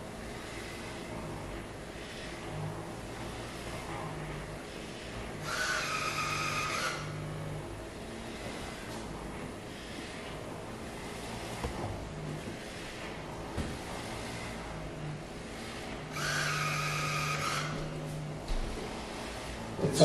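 iRobot Braava Jet 245 mopping robot running across a hardwood floor with a steady motor hum. Twice, about five seconds in and again about sixteen seconds in, a louder buzz lasts for a second or so.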